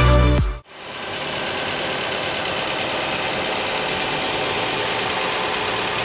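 Electronic music stops under a second in, followed by a 2016 Nissan March's 1.6-litre four-cylinder engine idling steadily, heard from its open engine bay.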